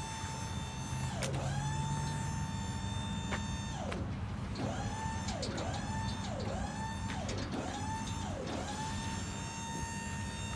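Electric hydraulic pump motor of a dump trailer whining steadily as the tailgate lowers. Its pitch dips sharply and recovers twice in the first half, then six times in quick succession, about every three-quarters of a second, through the second half.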